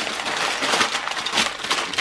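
Aluminum foil crinkling continuously as hands fold it over and press it into a packet, with a thick crackle of small sharp crinkles.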